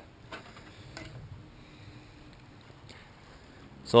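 Faint open-water ambience on a small fishing boat: low water and wind noise, with a couple of light clicks in the first second.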